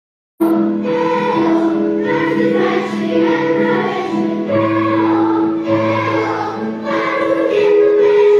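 A large children's choir singing a samba-style song in unison over an instrumental backing with a steady bass line. The sound cuts out completely for a fraction of a second right at the start.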